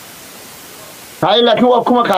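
Steady background hiss for a little over a second, then a man starts speaking.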